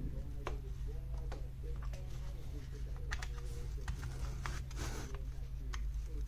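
Scattered light clicks and scrapes of a muddy Milwaukee M18 battery pack's plastic case being handled and picked at with a small pick, over a steady low hum.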